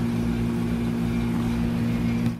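A steady motor drone at one unchanging pitch, with a light background hiss.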